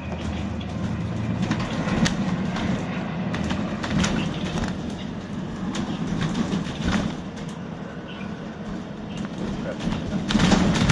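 Inside the upper deck of a moving ADL Enviro 400 double-decker bus: a steady engine and road rumble with rattles and knocks from the body and fittings, the sharpest knocks at about two, four and seven seconds in.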